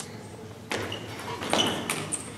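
Table tennis ball clicking off the rackets and the table during a rally: a few sharp, quick clicks, one with a short ping.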